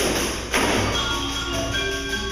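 Percussion ensemble music: two sharp pandeiro strikes with jingle shimmer, one at the start and one about half a second in, over sustained notes from mallet keyboard instruments.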